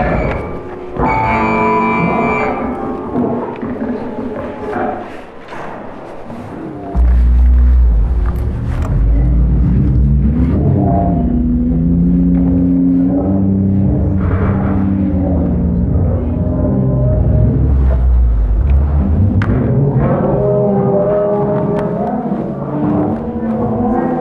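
Live electroacoustic laptop music made in Max/MSP: layered synthesized tones that thin out and drop in level, then about seven seconds in a loud deep bass drone enters suddenly and holds under sustained low tones that shift slowly.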